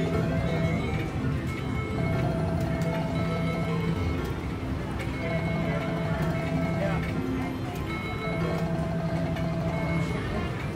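Cleopatra Keno video keno machine playing its free-games bonus music: a short electronic tune that repeats about every three seconds, once for each game drawn.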